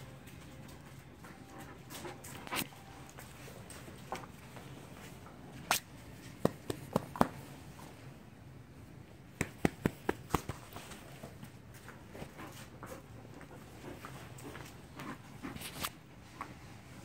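Dogs playing together, with short, sharp sounds in two quick runs of four or five, one about six seconds in and one about nine to ten seconds in.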